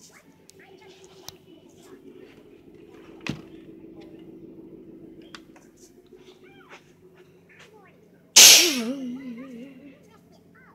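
A television playing a chipmunk cartoon movie's soundtrack, heard faintly across a room, with high voices and a low hum. There is a sharp knock a little past three seconds. About eight seconds in, a loud sudden rush of noise close to the microphone drowns it out and trails off into a wavering voice over about a second and a half.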